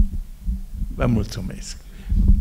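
Low thumps from a handheld microphone being handled, the sharpest right at the start, with a brief voice sound about a second in.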